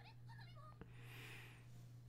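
Near silence: a steady low hum, with faint high-pitched sounds and a single click just under a second in.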